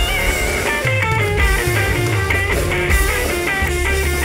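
Live rock band playing an instrumental break: an electric guitar solo of quick, stepping single notes over bass and drums.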